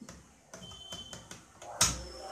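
Plastic parts of an LCD monitor stand clicking and rattling faintly as the monitor panel is lowered onto the stand's post, then one loud plastic clunk near the end as it drops into place.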